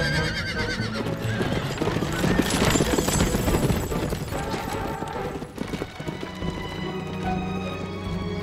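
Horse-drawn carriage galloping past: fast clattering hoofbeats and a horse whinnying near the start, over background music. The hoofbeats are loudest in the middle and fade by about six seconds in, leaving the music.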